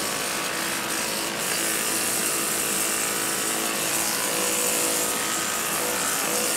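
Corded electric pet clippers running steadily as they are drawn through the fur on a Brittany spaniel's neck.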